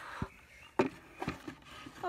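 Wooden boards knocking together as they are handled: one sharp knock a little under a second in, then two softer knocks, as a sawn disc of white-faced particle board is set against another board.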